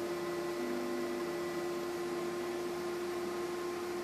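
Steady electrical hum, a single held tone with fainter overtones, over a low even hiss.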